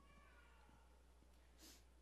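Near silence: the room tone of a quiet congregation, with a faint falling squeak in the first second and a brief soft hiss near the end.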